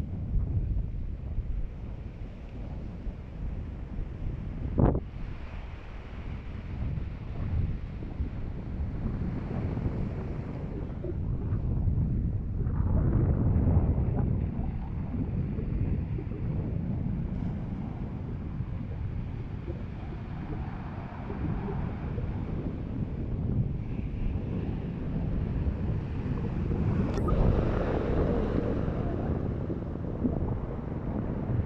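Wind buffeting the microphone with a heavy, uneven rumble, over small waves washing onto a pebble beach, the surf swelling louder about halfway through and near the end. One sharp click about five seconds in.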